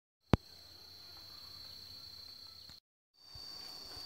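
A steady, high-pitched insect drone held on one tone, broken twice by brief silent gaps, with one sharp click just after the first gap.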